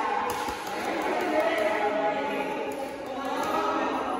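Several people's voices overlapping and echoing in a large indoor gym, a steady babble with no single clear speaker.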